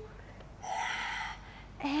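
A woman's audible breath through the mouth, short and airy, lasting well under a second, taken between counts of a breathing-paced exercise.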